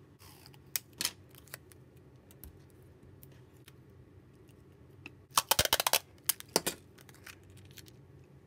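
Sticky tape being handled and applied to glass over paper: light clicks and taps, then a burst of crackling about five seconds in as tape is pulled and stuck down, with two shorter crackles just after.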